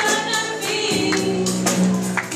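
Live song: a singer's voice into a microphone over a drum kit keeping a steady beat, cymbal strokes about three to four a second, with a low sustained note coming in about a second in.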